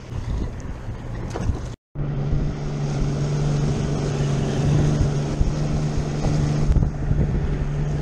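Outboard motor running steadily as the boat moves at speed, with wind buffeting the microphone. The sound cuts out briefly about two seconds in, then the engine's steady hum carries on.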